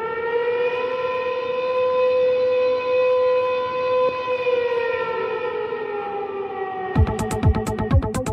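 Intro of an electronic track: a held, siren-like tone that rises slightly, then sags and fades after about four seconds. A 126-BPM electronic drum beat cuts in about a second before the end.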